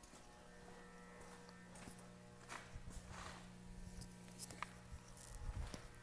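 Faint shop room tone: a steady low electrical hum with occasional soft clicks and knocks.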